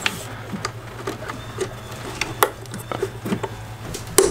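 Irregular light clicks and small rattles of a throttle linkage being worked back onto a throttle body by hand, over a steady low hum.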